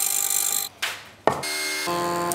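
Hollow-chisel mortiser cutting into a block of timber, a rasping, chip-cutting sound that stops and swishes away within the first second. About a second and a quarter in, a steady droning sound with several held tones comes in abruptly.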